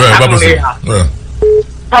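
A single short, steady telephone beep about one and a half seconds in, heard on the phone line of a caller's call into a radio show, between phrases of his speech.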